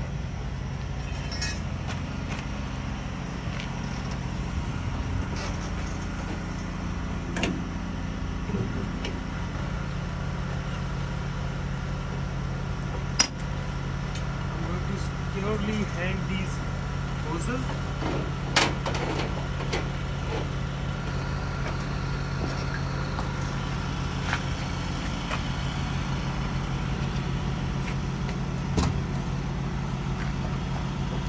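Semi-truck's diesel engine idling steadily, with a few sharp knocks and clanks about 13 and 18 seconds in as the trailer's air lines are handled and disconnected.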